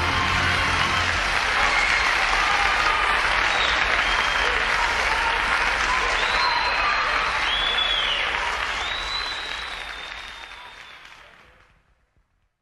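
Live audience applauding and cheering, with a few high calls sliding above the clapping, as the band's last note ends about a second in. The applause fades out near the end.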